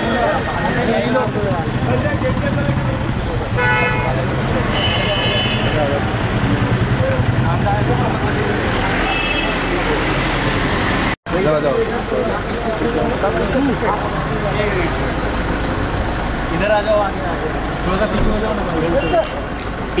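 Street traffic with car horns giving short toots about four and five seconds in and again about nine seconds in, over a running car engine and people's voices.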